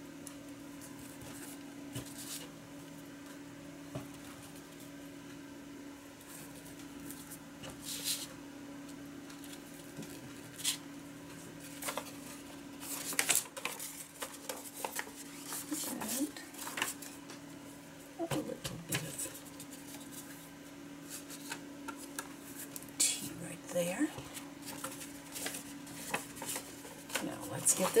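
Paper being handled: a sheet of envelope paper lifted, unfolded and refolded, with scattered rustles, crinkles and light taps against the craft mat. A steady low hum runs underneath.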